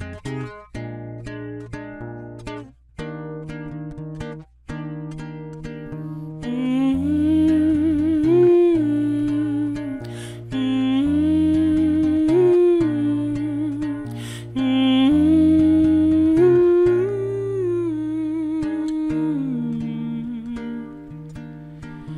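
Acoustic guitar playing a picked intro on its own. About six seconds in, a man's voice joins, humming a wordless melody in long held notes over the guitar.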